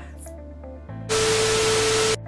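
Soft background music, then about a second in a loud burst of TV static hiss with a steady beep tone through it, lasting about a second: a glitch-style video transition sound effect.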